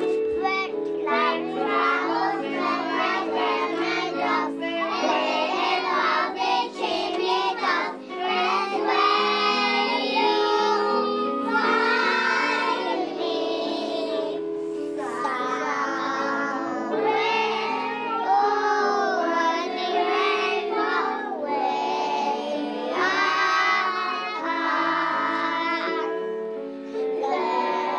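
Children singing a song in unison over instrumental accompaniment, with a steady held-note backing under the sung melody.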